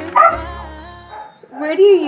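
A dog gives a single loud bark right at a cut, over the last of a music track. A person's voice starts near the end.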